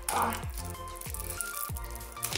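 Background music with held tones over a low, steady drum beat, about one thud every two-thirds of a second.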